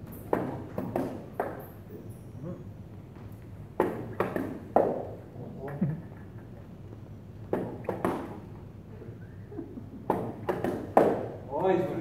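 Fencing sabres clashing and tapping: sharp metallic clicks with a short ring, coming in irregular clusters, several close together about four seconds in, around eight seconds and again near the end.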